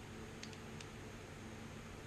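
Quiet room tone with a faint steady low hum, and two small faint clicks about half a second in.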